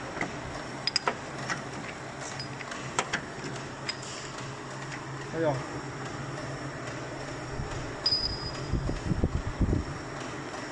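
Metal lathe boring out the cylinder bore of an aluminium motorcycle crankcase, its motor giving a steady low hum with scattered sharp clicks. A short high-pitched squeal comes about eight seconds in, and low thumps follow near the end.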